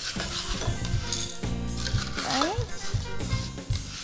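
Ice being scooped from a bowl and clinking into a glass, in short clicks, over background music with a steady bass line.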